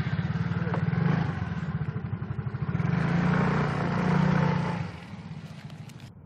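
Small motorcycle engine running and pulling away, the throttle opened twice. The engine sound drops away about five seconds in.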